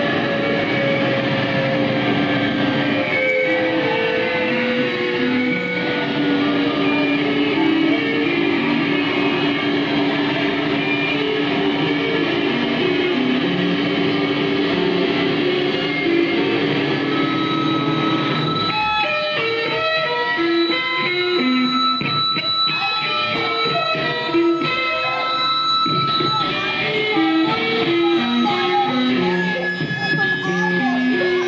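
Loud live noise music from an electric guitar and effects gear: long held notes with a tone that slowly falls over the first few seconds, turning a little past halfway into choppier, shifting notes over steady high-pitched tones.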